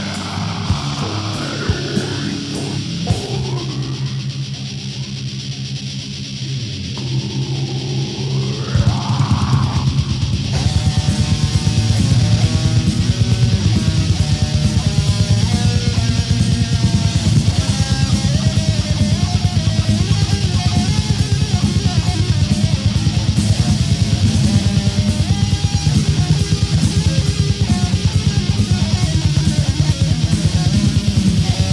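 Death metal band playing an instrumental passage. For the first ten seconds or so, distorted electric guitar plays bending, swooping lines over sparse drums. About ten seconds in, the full band breaks into a fast riff driven by rapid drumming.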